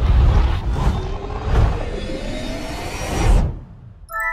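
Logo-ident sound effect: a loud whoosh over a deep rumble with a faint tone slowly rising through it, swelling to a peak shortly before the end and then cutting away.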